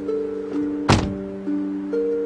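A car door shutting once with a single thunk about a second in, over soft background music of slow, sustained notes.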